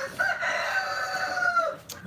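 A rooster crowing: one long call of about a second and a half, dropping in pitch at the end.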